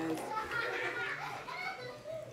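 Quiet overlapping voices talking, with no clear words.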